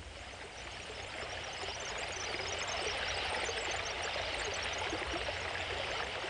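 A stream of running water, a steady rushing flow that fades in over the first couple of seconds and then holds.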